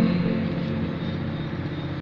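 Acoustic guitar's final chord ringing on and slowly fading out at the end of a song.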